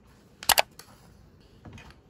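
A plastic squeeze container set down on a hard countertop: two quick sharp knocks about half a second in, then a fainter click and a soft rustle near the end.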